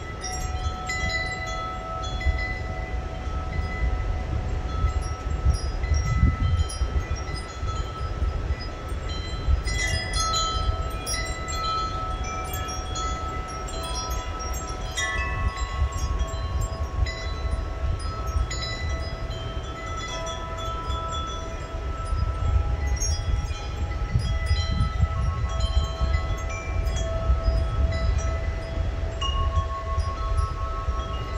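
Wind chimes ringing, several notes struck at irregular moments and ringing on over one another, above a low rumble that swells and eases.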